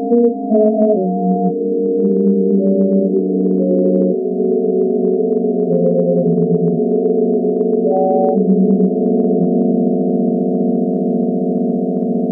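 Electronic music: dense, sustained synthesizer tones stacked in a low-to-middle register, their pitches shifting in steps every second or so, over faint clicking.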